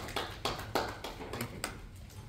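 Sparse hand clapping from a small audience, about three claps a second, stopping shortly before the end.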